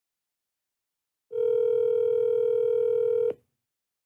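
Telephone ringback tone heard through the phone line: one steady ring of about two seconds, starting a little over a second in and cutting off cleanly, the sign that the called phone is ringing and has not yet been answered.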